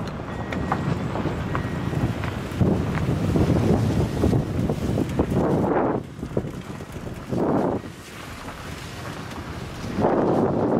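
Wind buffeting the microphone in gusts, loudest from about two and a half to six seconds in, with a shorter gust a little later.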